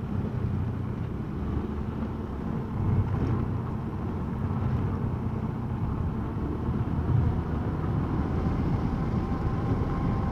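A small motorcycle's engine running steadily while riding along a road, with a dense low rumble of engine, road and wind noise.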